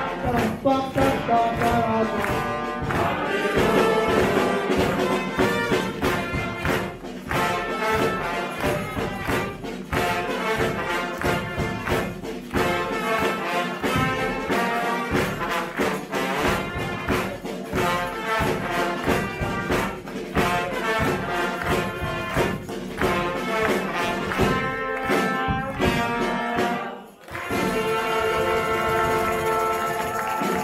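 Carnival brass band playing: trumpets and other brass over a steady bass drum and snare beat. It breaks off briefly about three seconds before the end, then comes back in with held notes.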